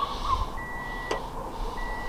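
A repeating electronic beep: a steady high tone about half a second long, sounding about once every 1.2 seconds, twice here. There is a faint click about a second in.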